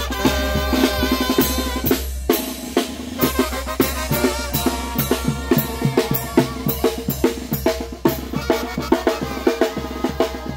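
A brass band playing: a wind-instrument tune over drums for about two seconds, a brief break, then mostly drums, snare and bass drum beating steadily, with some held notes underneath.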